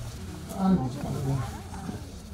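People's voices talking at a moderate level, with a strong low call, falling in pitch, from about half a second to a second and a half in.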